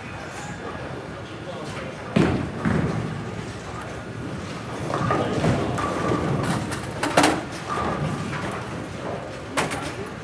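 Bowling alley din: bowling balls and pins on the lanes making several sharp knocks and thuds over background chatter, the loudest knock about seven seconds in.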